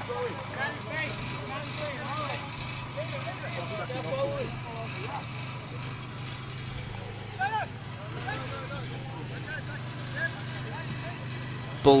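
Football pitch ambience: scattered distant shouts and calls from players, over a steady low hum.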